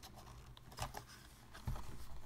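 Faint handling sounds: small clicks and scrapes as a 200-pin DDR2 laptop RAM module is lined up in a MacBook's memory slot. Near the end comes a low thump as hands press down on the laptop's case.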